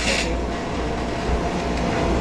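Steady low hum and room noise in a hall, with a short rustle of paper at the very start.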